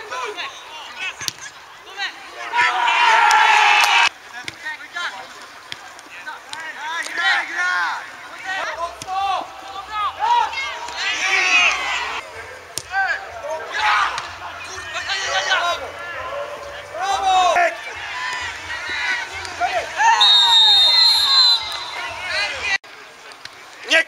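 Voices of players and spectators at an amateur football match, shouting and calling out across the pitch, with the loudest shouts about three seconds in and again near the end.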